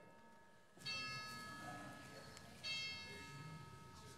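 Two struck chime notes, a little under two seconds apart, each ringing on and slowly fading.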